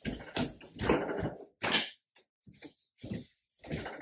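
Irregular rustling and shuffling: a cotton shirt handled and feet moving on a hardwood floor, in a few bursts that grow fainter after the first two seconds.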